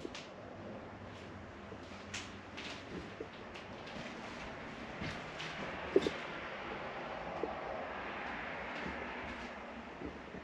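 Road traffic going by, a swell of tyre and engine noise that builds through the middle and fades near the end. Scattered light clicks and knocks sound over it, the sharpest about six seconds in.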